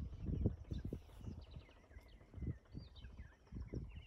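Birds in a tree calling: short high chirps and whistles, several gliding downward, with a stepped falling series about three seconds in, over a few low knocks.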